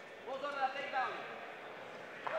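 A faint, distant voice calls out once, for under a second, over the low steady background noise of a hall.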